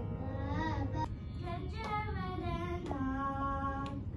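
Child singing a Carnatic song, with wavering, gliding ornamented notes; an abrupt break about a second in.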